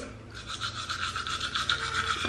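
Manual toothbrush scrubbing teeth in quick back-and-forth strokes, a steady scratchy brushing that starts about a third of a second in.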